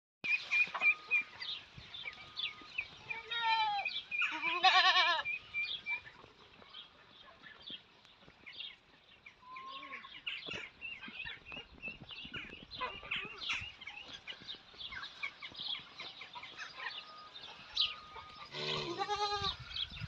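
Goats bleating: two loud, quavering bleats about three to five seconds in and another near the end, with quieter animal sounds in between.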